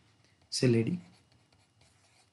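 A man says one short word about half a second in. Faint scratching from a pen or stylus writing on a tablet follows near the end.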